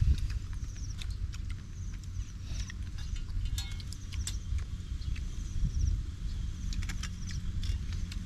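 Wind rumbling on the microphone, with scattered light clicks and taps of shells being handled and pried open with a knife. Faint high chirps come a few times.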